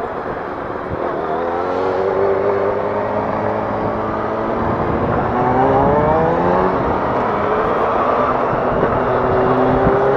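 Yamaha FZ6 Fazer's inline-four engine accelerating from a standstill, its pitch rising and dropping back at each gear change about three times, under steady wind noise.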